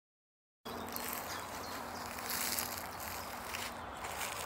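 Outdoor woodland ambience that cuts in abruptly after silence, a little over half a second in. It is a steady background hiss with a faint steady hum, typical of insects buzzing in the open air.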